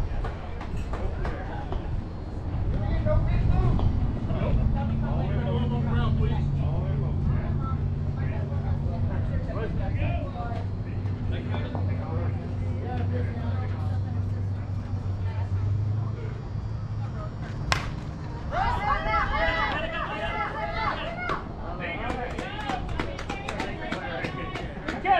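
Softball players and onlookers talking and calling out across the field, with a steady low hum underneath for several seconds. About three quarters of the way in comes a single sharp crack, followed at once by louder shouting.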